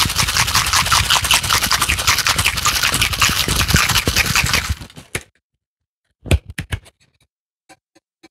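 Ice rattling in a stainless steel cocktail shaker shaken hard, a fast, steady rattle that stops about five seconds in. A few short knocks follow about a second later.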